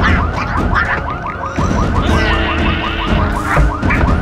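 Car alarm going off with a rapid run of rising whoops, several a second, changing briefly to a different warbling pattern about halfway through, over music with a heavy bass.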